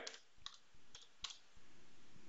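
A few faint, scattered clicks of computer keys as text is typed into a field.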